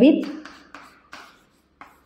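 Chalk writing on a chalkboard: a few short, separate scratches and taps as digits are written.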